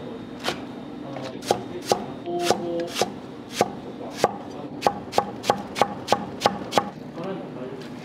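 Chinese cleaver chopping vegetables on a cutting board: sharp knocks of the blade striking the board, uneven at first, then a steady run of about three strokes a second that stops about seven seconds in.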